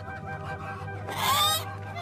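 A hen squawks once, loud and shrill, just over a second in, against a faint steady background.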